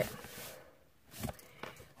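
Hands rubbing over a brown paper envelope: a short papery rub as the hand slides off, then quiet handling with one soft brief rustle about a second in.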